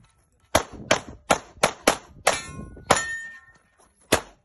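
CZ SP-01 pistol fired seven times in quick succession, the shots about a third to half a second apart. Steel targets ring briefly after the later shots, marking hits.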